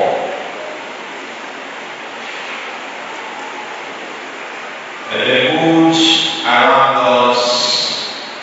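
A man's voice over a church PA, singing or chanting a phrase with a held note, starting about five seconds in. Before it there is only low, steady background noise of the hall.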